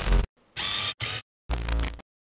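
Logo sting: about four short, chopped electronic bursts, each cut off abruptly by dead silence.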